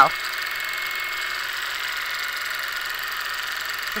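Longarm quilting machine running steadily as it stitches a free-motion design.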